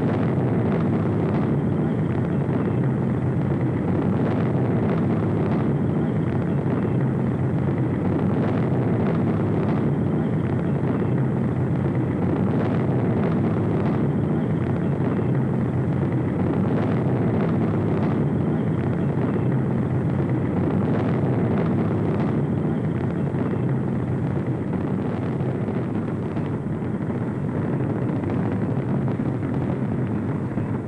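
Saturn V first stage's five F-1 rocket engines firing at launch: a loud, steady, deep rumble that eases slightly near the end.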